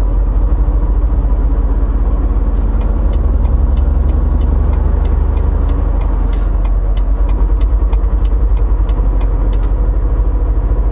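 Semi truck's diesel engine and road noise heard inside the cab while driving, a steady low rumble. From a couple of seconds in, a faint, regular ticking runs over it.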